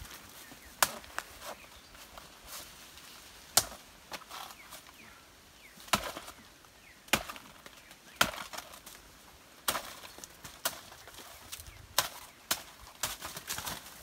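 Machete chopping into a banana stem to split it down the centre: about a dozen sharp strikes a second or two apart, coming faster near the end.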